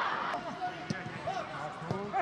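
A football kicked on a grass pitch: two sharp thuds of the ball about a second apart, with players' calls and shouts around them.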